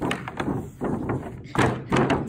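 Hollow thunks and knocks from a plastic kiddie pool being shoved and flipped over by a dog, several in quick succession.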